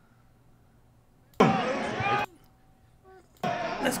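Mostly near silence, broken about a second and a half in by a short, abrupt burst of a man's voice lasting under a second, with speech starting again near the end.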